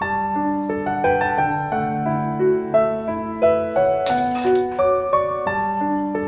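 Background piano music, a gentle melody of held notes over a steady accompaniment, with a brief noisy burst about four seconds in.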